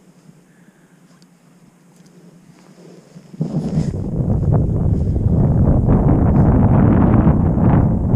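Wind buffeting the microphone: quiet at first, then about three and a half seconds in a loud, rough rumble sets in suddenly and keeps going.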